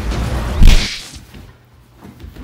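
A sharp, whip-like crack sound effect for a speedster's lightning, about two-thirds of a second in, over a low rumble, dying away within about a second.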